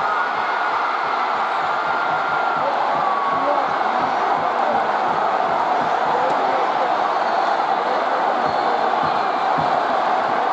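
A large baseball stadium crowd cheering a home run: a dense, steady roar of many voices that holds at one level.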